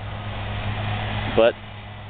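A steady low motor hum with a rushing noise over it. The rush swells and then drops away about a second and a half in.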